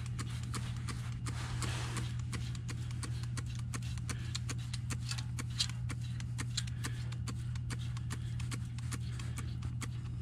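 Electronic refrigerant leak detector ticking at an uneven rate over a steady low hum, the ticks not speeding up into an alarm.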